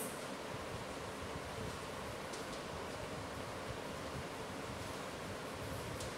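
Steady background hiss of room noise, with a faint tap about two and a half seconds in.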